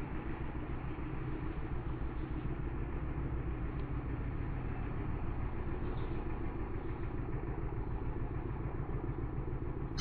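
A steady low rumbling drone with a machine-like quality, holding an even level throughout.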